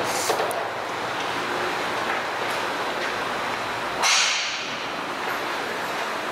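Handheld camera handling noise over the steady background noise of a large store, with one brief loud rustle about four seconds in.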